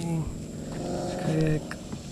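A person's voice: a short sound at the start, then a longer drawn-out one lasting about a second, with no words made out.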